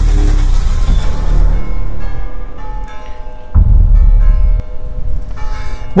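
Opening theme music of a local TV news bulletin under its logo animation: deep bass hits, one at the start and another about three and a half seconds in, under long ringing tones.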